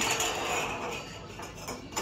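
Dishes and cutlery clinking over the murmur of a dining room.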